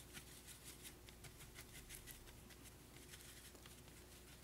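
Faint scratchy ticking of a paintbrush mixing acrylic paint on a paper plate, many small strokes in quick succession.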